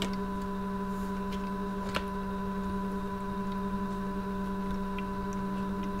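A steady background hum, with one faint click about two seconds in and a few fainter ticks.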